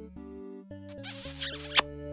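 Background music of steady, electronic-sounding notes that change every fraction of a second. About a second in, a short hissing noise lasts under a second and ends in a sharp click.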